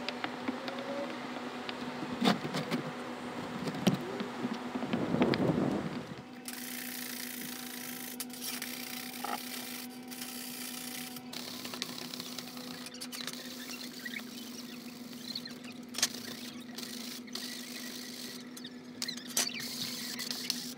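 For the first six seconds, uneven scraping and rustling of hands and tools on the roof. After that, a wire brush and abrasive pad scrubbing a metal roofing sheet, with scratchy strokes and scattered sharp clicks, cleaning the metal ready for soldering. A steady low hum runs under both.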